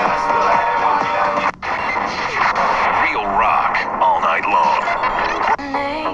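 FM broadcast audio from a Tecsun PL-330 portable radio's speaker: station talk and music, cut by a brief dropout about one and a half seconds in as the receiver switches from one station to another, then music with singing from the new station.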